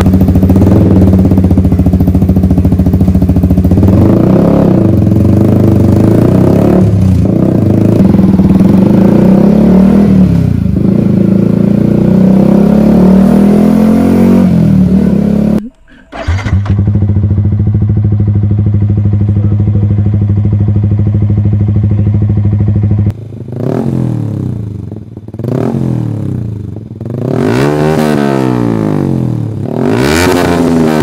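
Yamaha YZF-R15 single-cylinder engine running through aftermarket exhausts in two clips. The first idles loudly with a few short throttle blips. After a sudden break about halfway, an SC Project exhaust idles steadily, then gets a run of quick revs that rise and fall.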